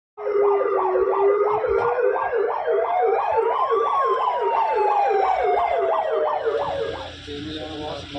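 Police siren: a fast yelp rising and falling about three times a second, layered with a slower wail that climbs for about four seconds and then falls away, fading out about seven seconds in.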